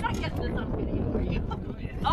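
Wind buffeting the microphone in an open boat, a steady uneven low rumble, with brief indistinct voices.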